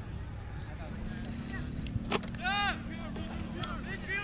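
Sounds from a soccer field: a single sharp smack about two seconds in, then a loud, high-pitched shout from the field, over a steady low hum.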